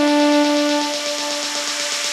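Melodic techno breakdown: a held synthesizer chord fades out about a second in while a noise sweep builds, with no kick drum.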